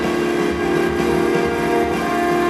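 Live orchestra with modular synthesizer and drum kit playing a held, droning chord over a busy, pulsing low end.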